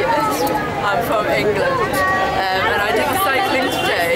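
People talking, with voices running on throughout and no other distinct sound.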